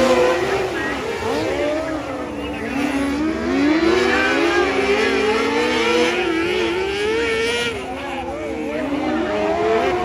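Several quarter midget race cars' small engines running together on a dirt oval. Their pitches rise and fall and cross one another as the cars lap.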